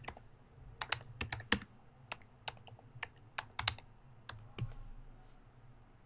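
Typing on a computer keyboard: a quick, irregular run of key clicks that stops a little after the middle.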